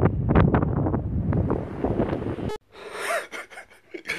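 Wind buffeting a phone's microphone outdoors, a loud irregular rumble that cuts off suddenly about two and a half seconds in. A man's soft, breathy laughter follows.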